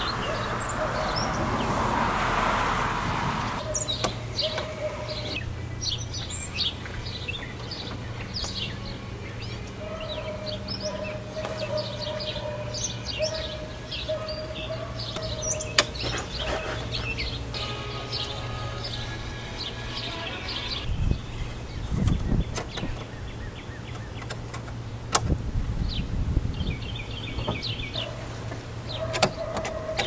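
Wild birds chirping and singing throughout, with a rustling noise in the first few seconds. Later come several knocks and bumps from the fibreboard headliner board being handled into place against the roof.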